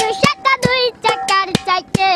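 A boy singing a Bengali folk song, accompanying himself by striking a metal water pot with his hand, the sharp strikes falling in a quick, uneven rhythm under his voice.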